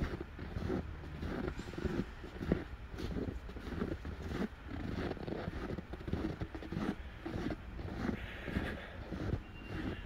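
Footsteps crunching in very cold, dry snow at walking pace, about one and a half steps a second, over a steady low rumble.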